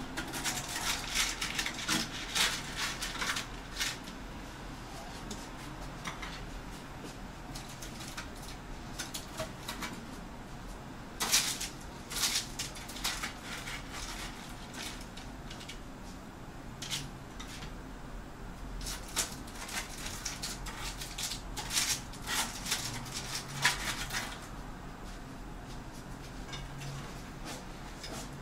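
Kitchen utensils and dishes clinking and scraping in short irregular clusters as hot oven-baked pizza sandwiches are lifted off the tray and served, with quieter gaps between.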